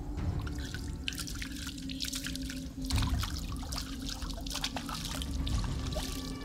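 Water splashing and dripping in irregular small spurts as clothes are washed by hand in a stream.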